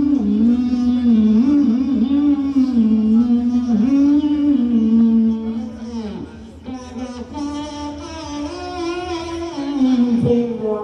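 A voice amplified through a microphone, held in one near-continuous synthesiser-like tone that slides and wavers in pitch, with a dip in loudness about six seconds in.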